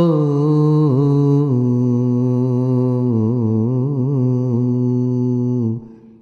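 A man's voice chanting a devotional invocation in long held notes whose pitch wavers and turns in ornaments. The chant stops suddenly near the end.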